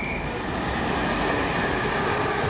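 Greater Anglia intercity train, a class 82 driving van trailer leading with a class 90 electric locomotive at the rear, running through the station at speed. Its wheels on the rails make a steady rush, with a high whine that slides slightly down in pitch.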